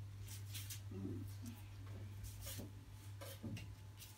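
Quiet small-room tone: a steady low hum with faint rustles and soft clicks, and a brief murmured voice about a second in.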